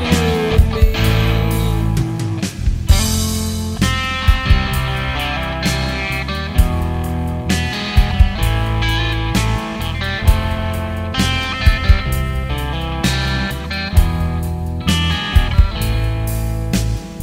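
Instrumental break in a rock song: electric guitar playing sustained notes over a steady bass line, punctuated by sharp, regular beats.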